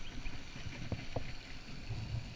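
Low rumbling noise on a head-mounted GoPro's microphone while a small bass is swung out of the water on the line, with two faint short ticks about a second in.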